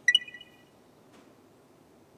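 A short, bright chime sound effect that rings briefly and fades within about half a second, marking a measurement reading as it comes up.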